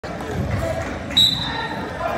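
A referee's whistle gives one short, sharp blast about a second in, a steady high note that fades away. It sounds over voices and chatter echoing in a gym.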